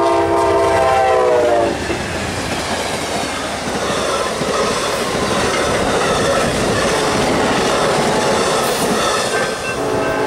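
A Nathan K5LA air horn on the lead GE P42DC locomotive finishes its blast, the chord dropping in pitch as the locomotive passes, and cuts off about two seconds in. Then the Superliner passenger cars roll by with a steady rush of wheel and rail noise. Right at the end the horn sounds again, lower in pitch as the train moves away.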